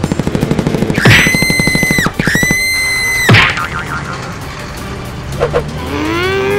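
Cartoon sound effects laid over the footage. A rapid-fire pulsing zap runs for about the first second, then two long, high, steady tones of about a second each start sharply and drop away at the end. Quieter background music and a few short blips follow.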